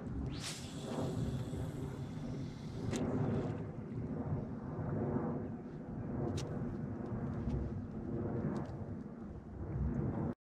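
A steady low rumble with a few light knocks and clicks.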